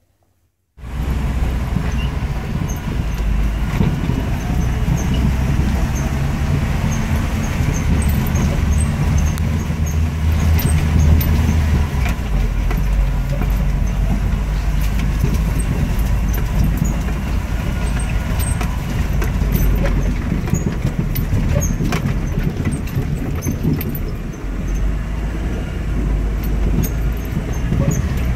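Jeep Wrangler driving along a bumpy dirt track: a steady low rumble of engine and road noise, with scattered knocks and rattles. It starts suddenly about a second in.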